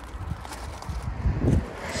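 Footsteps crunching on gravel, loudest about a second and a half in.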